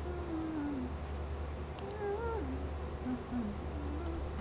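Several short pitched calls that slide in pitch: a falling one at the start, a rise-and-fall about two seconds in, and two short notes near the end. They sound over a steady low hum, with a few faint clicks in the middle.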